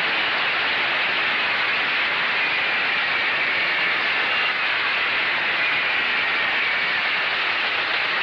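Studio audience applauding: a steady, even clatter of clapping after a musical number.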